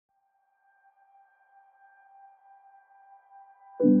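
Intro music: a soft, steady high tone swells in, then a loud low chord strikes just before the end and rings on.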